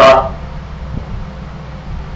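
A man says one short word at the start. Then comes a steady low hum of background noise in the video-call audio.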